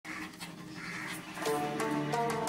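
Small long-haired dogs panting, then background music with steady held notes coming in about one and a half seconds in.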